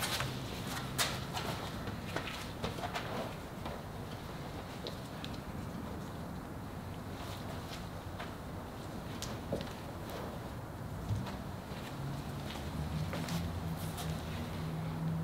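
Carbon fiber cloth rustling as it is lifted, shifted and laid over a hood mold, with scattered light clicks and crinkles, most of them in the first few seconds. A faint steady low hum runs underneath.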